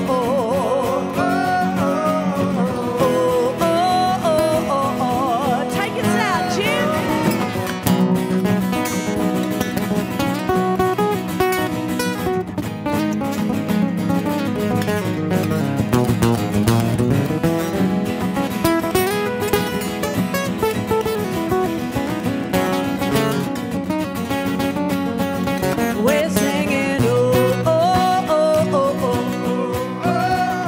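A live acoustic song: several acoustic guitars strumming and picking, with a woman singing at the start and again near the end, and a guitar-led instrumental stretch in between.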